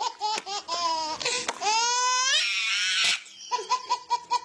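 A baby laughing hard: quick repeated bursts of laughter, then a long rising squeal and a breathy shriek in the middle, then more quick bursts of laughter near the end.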